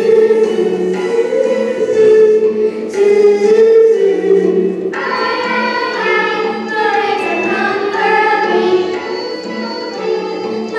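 A children's chorus singing a song from a stage musical, with a higher, brighter phrase starting about halfway through.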